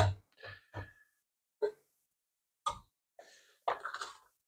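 A few faint, scattered scrapes and taps of a whisk stirring thick chocolate custard in a stainless steel pot, one near the start leaving a brief metallic ring.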